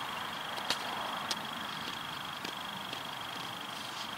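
Quiet outdoor background hiss with a faint, steady high-pitched whine running through it. Three small clicks come in the first half.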